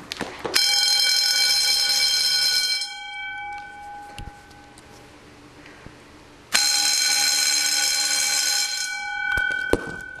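Red electric fire-alarm bells, driven by a modified Wheelock KS-16301 telephone-ring relay, ring loudly in two bursts of about two seconds, four seconds apart. This is the telephone ring cadence of an incoming call. After each burst the bell tone dies away, and a few sharp clicks come near the end.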